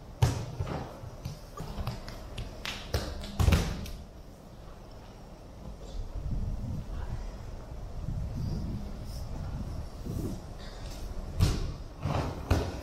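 Thuds of young children landing barefoot on a padded gymnastics mat and clambering over soft foam plyo boxes. There are a few sharp thumps, the loudest about three and a half seconds in, with softer low shuffling and scuffing between them.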